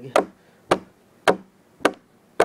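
A steady beat of short, sharp knocks, about two a second, four in all, with near quiet between them.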